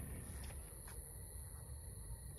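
Faint, steady high-pitched chirring of night insects, with low rumble and a couple of faint clicks.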